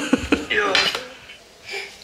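Short snatches of speech mixed with a couple of light knocks or clatters in the first second, then a quiet room.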